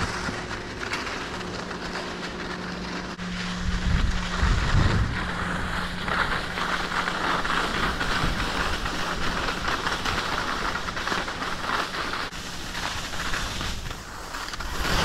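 Skis sliding and scraping over packed snow, with wind buffeting the camera microphone, over a steady low hum that fades out near the end.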